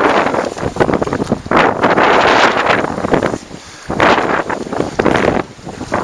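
Strong wind buffeting the microphone in uneven gusts, loud and rushing, with short lulls about three and a half seconds in and again near the end.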